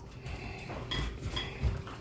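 Light clicks and metallic clinks from two puppies jumping about on a tile floor: claws tapping the tiles and collar tags jingling, with a couple of brief high rings about halfway through.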